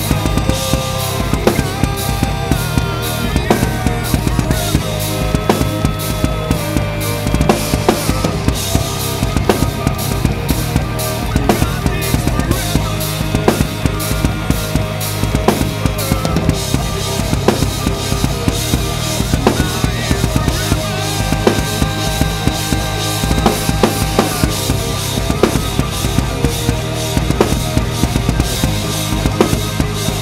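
DW acoustic drum kit played fast and steadily, with kick drum, snare and cymbal hits, along to a recorded song with bass and sustained melodic instruments.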